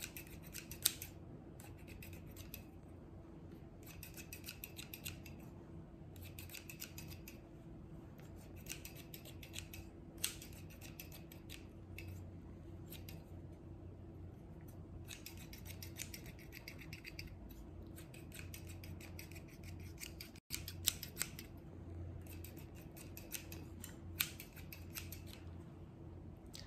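Scissors snipping in repeated runs of quick snips, with short pauses between the runs, over a steady low hum.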